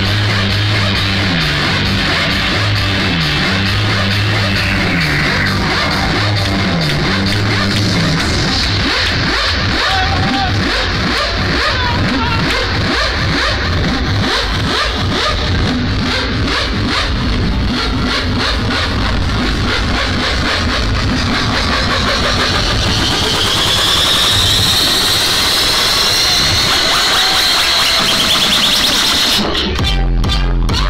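Loud techno over a festival sound system. A stepping bass line runs for the first several seconds, then a breakdown builds with a rising sweep, and the deep kick drum and bass drop back in near the end.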